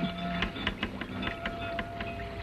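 A quick, irregular run of sharp clicks and knocks over a faint held tone.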